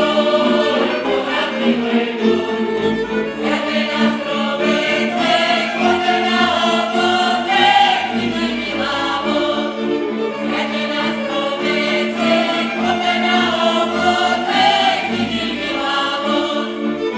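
Group of voices singing a Slovak folk song from the Horehronie region in chorus, over a string band with a steady held low note beneath.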